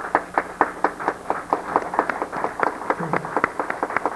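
One person clapping his hands in a quick, even run of sharp claps, about six a second.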